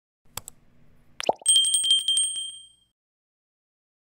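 Sound effect for a subscribe-button animation: a single mouse click, then a quick rising whoosh. After that a bell rings in a fast trill and dies away after about a second.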